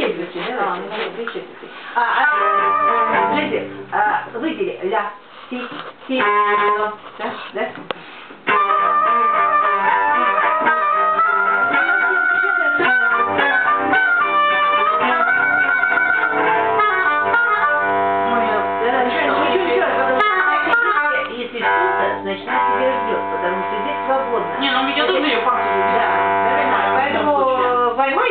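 An instrumental ensemble rehearsing a piece, with sustained chords under a melody line. It plays in short starts and breaks for the first several seconds, then continuously from about eight seconds in.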